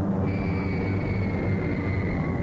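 Cartoon sound effect of several bomber aircraft engines droning steadily, joined about a quarter second in by the high whistle of a falling bomb, which sinks slightly in pitch.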